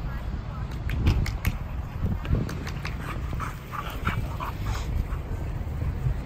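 Two young dogs playing rough, with a few sharp clicks about a second in, then a run of short high whimpers and yips in the middle.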